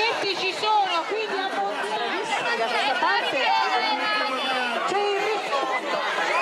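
Crowd chatter: many voices talking and calling out at once, high-pitched voices among them, with no single voice standing out.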